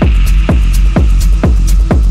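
Techno track with a four-on-the-floor kick drum, a little over two beats a second, over a steady low bass drone and ticking hi-hats.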